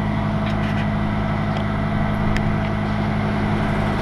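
Engine idling steadily, a low even hum, most likely the yard crane's engine left running after it has lowered the mast.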